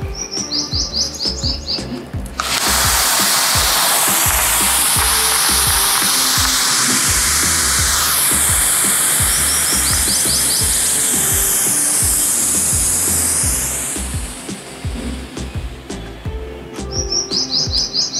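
Handheld colour smoke stick hissing loudly and steadily as it jets out smoke, starting about two seconds in and dying away after about eleven seconds. Background music with a steady beat runs underneath.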